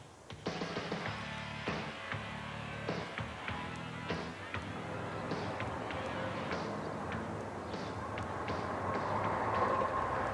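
A rock band playing an instrumental groove, drums keeping the beat under held bass and guitar notes, starting about half a second in.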